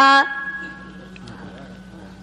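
A man's voice ends a drawn-out word, then its ringing echo fades away slowly over a steady low hum.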